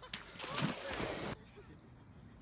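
Running footfalls and splashing as someone runs down a sand bank into shallow water, sand spraying, with a voice faintly in it; it lasts about a second and cuts off sharply.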